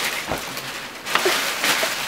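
Wrapping paper being torn off a gift box: several quick rips and rustles of paper.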